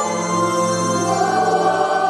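A church choir singing a hymn together, holding long notes and moving to new notes near the end.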